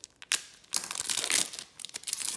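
Foil wrapper of a Topps WWE trading card pack being torn open: a couple of sharp snaps about a third of a second in, then a burst of crinkling through the middle as the wrapper is pulled apart.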